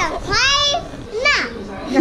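A toddler making high-pitched wordless vocal sounds: two calls that glide up and down in pitch, the second one shorter and falling.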